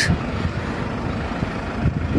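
Steady low vehicle rumble with no single event standing out.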